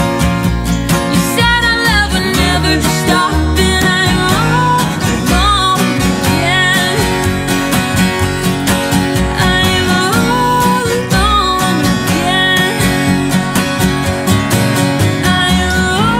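Live acoustic band playing: two strummed acoustic guitars and an upright bass keeping a steady rhythm, with sung vocals over them.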